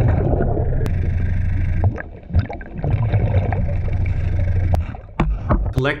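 Minelab Excalibur II underwater metal detector giving two long, low-pitched target tones, each about two seconds, with a short break between them, and a few sharp clicks.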